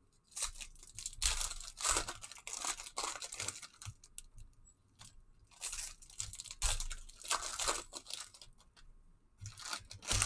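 Foil trading-card pack wrapper crinkling and being torn open by hand, in repeated crackling bursts with a short lull about four to five seconds in.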